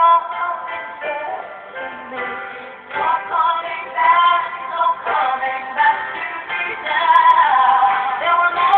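A woman singing a ballad, holding several long notes.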